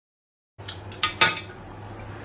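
Silence, then about half a second in a few sharp clinks and knocks of kitchen utensils against the stone countertop, the loudest two a second or so in.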